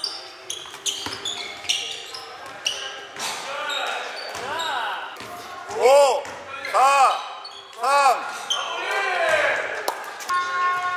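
Basketball dribbling on a hardwood gym floor with short sneaker squeaks, echoing in a large hall. From about the middle, a voice calls out four or five times, about a second apart, each call long and rising then falling in pitch; these calls are louder than the dribbling.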